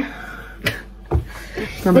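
A short pause between women's words, broken by two brief knocks about half a second apart, the second a deeper thump.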